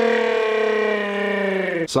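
A man's voice holding one long sung note, steady and then sagging a little in pitch before it cuts off just before the end.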